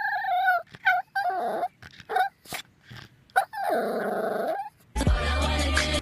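A Pomeranian giving a run of high, wavering cries: short ones at first, then a longer drawn-out one about four seconds in. Near the end, a music track with a heavy bass beat cuts in.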